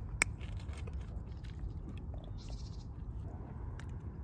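Metal screw cap of a green glass bottle of Chungha rice wine twisted open: its seal breaks with one sharp click, followed by a few faint small clicks and rustles over a low steady rumble.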